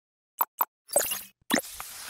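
Animated intro sound effects: two quick pops, then a bright hissing burst about a second in and another pop-like hit near the end.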